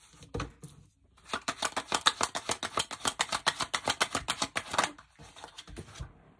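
A tarot deck being shuffled by hand: a quick even run of card slaps, about nine a second, lasting some three and a half seconds, after a single tap near the start.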